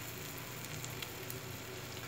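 Omelette mixture of egg, sausage and cabbage sizzling faintly in an oiled frying pan over low heat: a steady soft hiss with a few small crackles.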